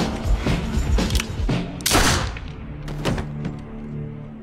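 Dramatic action film score with heavy percussive hits. The loudest is a crashing hit about two seconds in, after which the music thins out.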